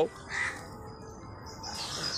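Birds calling outdoors: one short call about half a second in, then faint high chirps near the end.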